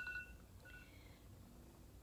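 Two short, faint electronic beeps, one at the start and another just under a second in, over quiet room tone.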